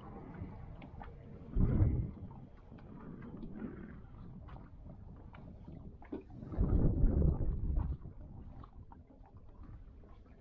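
Wind and water noise around a small boat on open water: two loud bursts of low rumbling, about two seconds and seven seconds in, over a faint background with light clicks.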